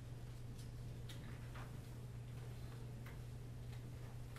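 A low steady hum with a few faint, irregular clicks scattered through it.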